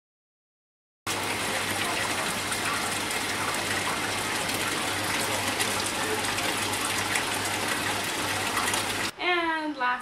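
Water gushing and bubbling in an aerated koi tank, a steady rush with a low hum under it, starting after about a second of silence. A woman's voice takes over near the end.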